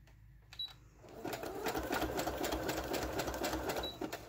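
Brother electric sewing machine stitching a zigzag seam through paper. It starts about a second in, runs at an even fast pace, and stops just before the end. There is a single click shortly before it starts.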